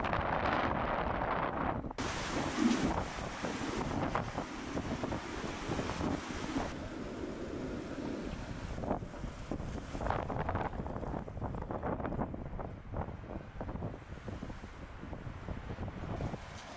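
Wind buffeting the microphone outdoors, a rumbling rush that rises and falls in uneven gusts.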